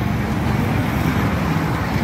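Loud, steady outdoor street noise: a dense, even rush with no single clear source.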